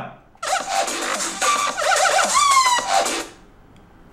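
Music playing at full volume from the Razer Phone 2's front-facing stereo speakers. It starts about half a second in and stops short at about three seconds.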